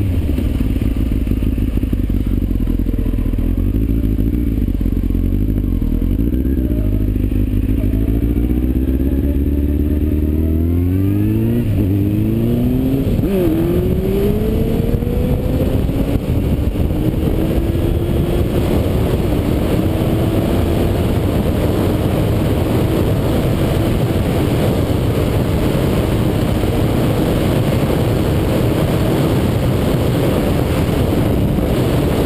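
Kawasaki motorcycle engine under way, its pitch rising as it accelerates, with two upshifts about 11 and 13 seconds in that drop the pitch. After that it runs at a steady, slowly climbing pitch, with heavy wind noise on the microphone throughout.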